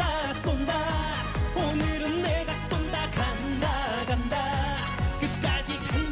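Upbeat Korean trot song performed live: a man sings the chorus into a microphone over a dance backing track, with a kick drum beating about twice a second.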